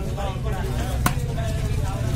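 A single chop of a large knife through fish into a wooden log chopping block about a second in, over background voices and a low rumble.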